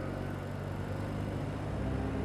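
BMW R65LS's air-cooled flat-twin engine running steadily at road speed, with wind rushing past, as the background music drops away.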